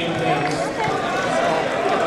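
Indistinct chatter of several voices overlapping in a large hall, with no one speaker standing out.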